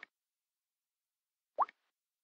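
Two short rising blips of a Samsung Galaxy S4's touch feedback sound as on-screen buttons are tapped, one right at the start and a second about one and a half seconds later.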